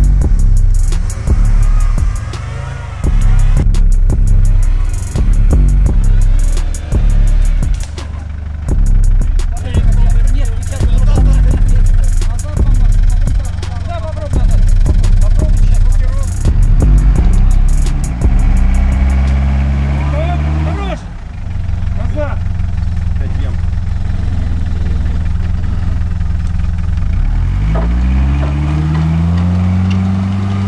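Background music with a steady, pulsing beat for the first two-thirds or so. Then a Mitsubishi Pajero's engine revs hard as it churns through deep mud, its pitch climbing in two long rises, one past the middle and one near the end.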